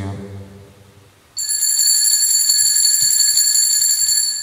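Church altar bell rung rapidly and continuously: a bright, high ringing that starts suddenly a little over a second in and holds evenly for about three seconds.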